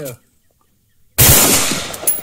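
A single rifle shot from an AR-15-style rifle firing a 55-grain 5.56 round, cracking out suddenly about a second in after a short hush and ringing away in a long echo.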